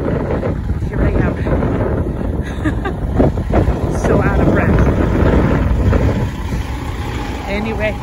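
Wind rumbling on the phone's microphone over the low running of diesel semi trucks, easing a little about six seconds in, with faint voices.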